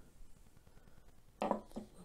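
Pair of pliers set down on a wooden tabletop: two quick knocks about one and a half seconds in.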